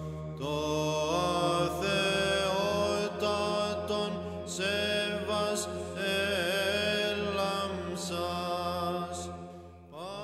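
Orthodox liturgical chant: a slow, ornamented sung melody with long held notes over a steady low drone (ison). It fades down near the end.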